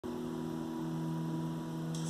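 A steady low electrical hum made of a few even tones, unchanging throughout.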